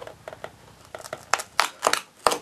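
Cardboard door of an advent calendar being pushed in and torn open by hand: faint small clicks, then several sharp crinkling crackles in the second half.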